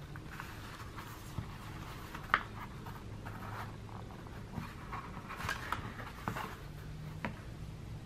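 Faint rustling and light clicks of twine and fabric being handled as the twine is pulled tight around a stuffed fabric carrot and tied into a bow, over a low steady hum.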